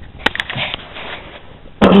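Two sharp clicks a little over a tenth of a second apart, with a brief faint rustle after them, then a man clearing his throat near the end.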